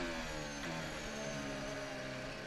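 Onboard sound of a Red Bull RB16B Formula 1 car's Honda 1.6-litre V6 turbo-hybrid engine running at low revs just after the car has spun. The pitch sags slightly at first, then holds steady.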